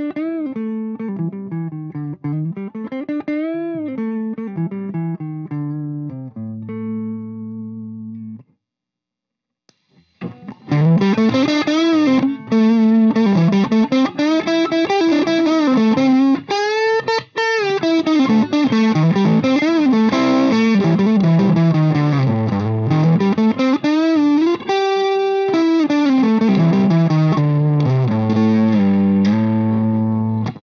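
Electric guitar lead lines with string bends and vibrato, played on a Heritage H535 semi-hollow through a Marshall JTM45 tube amp. The first lead phrase is quieter and cleaner with the Lovepedal Blackface Deluxe overdrive off; it stops about eight seconds in. After a brief pause the playing resumes louder and more distorted with the pedal switched on.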